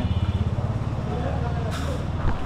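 An engine running close by, a steady low rumble with rapid even pulsing, under faint background voices. A brief rustling burst comes near the end.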